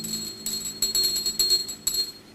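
Small jingle bells shaken in irregular strokes, ringing with a bright high pitch. The last piano chord dies away underneath in the first moments.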